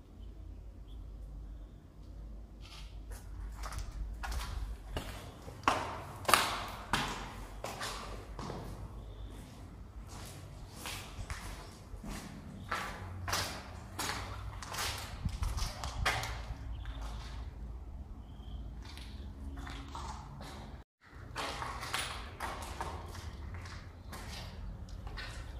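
Footsteps of a person walking on a hard floor, about two steps a second, over a low steady rumble.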